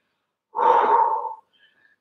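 A woman's single breathy gasp of effort, about a second long, starting about half a second in.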